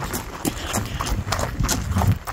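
Hurried footsteps of a person running, quick irregular steps about four a second, mixed with the rustle and knocks of a phone being carried.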